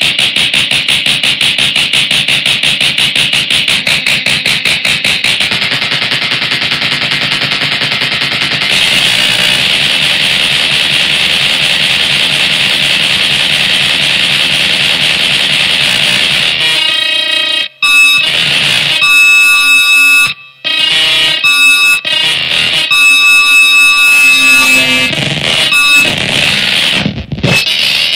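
Harsh noise music: a loud, dense wall of distorted noise pulsing rapidly. About two-thirds of the way through it turns choppy, with sudden dropouts and shrill, alarm-like steady tones.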